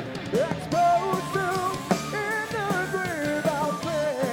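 Live rock band playing: bass guitar, keyboard and drums under a wavering sung vocal line.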